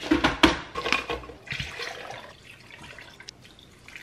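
Liquid being poured into a glass blender jar holding fruit and ice, with a few knocks and clinks in the first second. The pour dies away a little past halfway.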